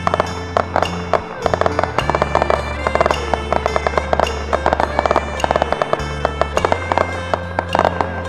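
Aerial fireworks crackling and popping in rapid, irregular bursts over music: a wavering melody above a steady low drone that drops out briefly a few times.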